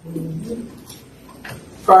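A brief, low hummed "mm" from a person's voice at the start, then quiet room tone until speech resumes near the end.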